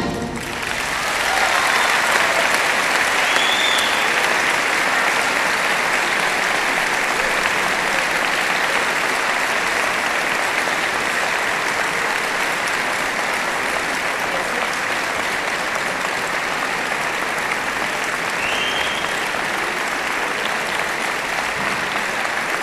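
Large concert-hall audience applauding, steady and sustained. The band's last chord cuts off right at the start, and the applause swells over the first couple of seconds, then holds.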